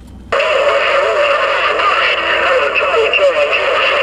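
Received radio signal from the Uniden HR2510 ten-metre transceiver's speaker: a distant station's voice, garbled and buried in loud static, cutting in abruptly a moment in as the transmitter is unkeyed.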